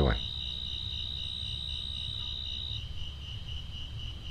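Crickets trilling: one steady high trill stops about three quarters of the way through while a pulsing chirp goes on, over a low hum.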